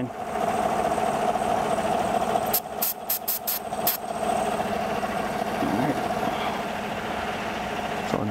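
R134a refrigerant hissing steadily out of the loosened charging-hose fitting on an AC manifold gauge set as air is purged from the line. A quick run of sharp clicks comes about three seconds in.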